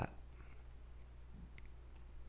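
A few faint clicks, one about a second in and another about half a second later, over a steady low electrical hum.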